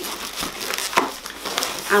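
Inflated latex modelling balloons rubbing and squeaking against each other and the hands as they are twisted and the nozzle is pulled through, with a few sharp crackles.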